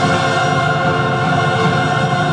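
Mixed choir and full symphony orchestra sounding together, holding a loud sustained chord, in a 1955 recording.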